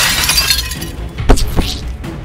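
A loud shattering crash, like breaking glass, dying away about half a second in, followed by two sharp knocks about a second and a half in.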